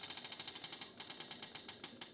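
Prize wheel spinning, its flapper clicking rapidly against the pegs round the rim; the clicks slow as the wheel loses speed.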